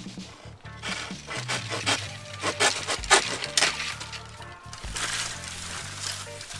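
Knife hacking at a standing bamboo stalk: a quick run of sharp woody knocks and cracks through the first few seconds, easing off after. Background music plays underneath.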